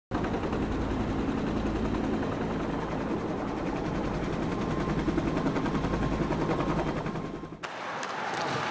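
Helicopter rotor blades chopping in a rapid, steady beat, cut off suddenly near the end.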